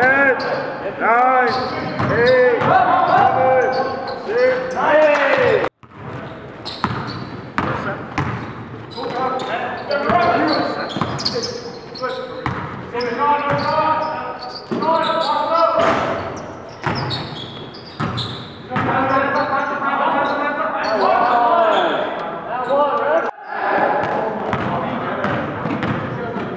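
Basketball game sounds in an echoing gym: a ball bouncing on the hardwood as players dribble, sneakers squeaking in short high glides, and players' voices calling out. The sound breaks off for an instant twice, about six seconds in and near the end.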